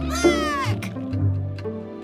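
Jingle-style background music with a short, high, cartoonish voice cry that slides down in pitch about a quarter second in.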